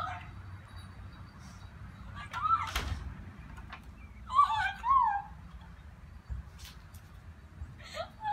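Puppy whining: high-pitched cries that glide down in pitch, in two short bouts. A single sharp thump about three seconds in.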